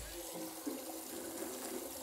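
Water from a bidet's spout running and trickling into the bowl, faint and steady.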